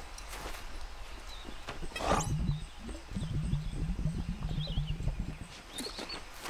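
Cartoon sound effects of a golf swing: a quick rising swish about two seconds in, then a cartoon bear's low, stuttering groan lasting about three seconds as he strains in a twisted follow-through.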